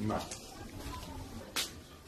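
A man's voice speaking a brief word at the start, then low room tone with one short, sharp click-like sound about one and a half seconds in.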